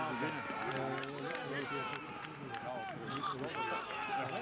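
Several young footballers shouting and cheering at once, celebrating a goal.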